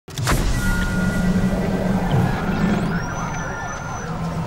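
Animated intro's sound design: a sudden hit, then a dense mix of music and effects over a steady low drone, with a tone gliding upward about three seconds in.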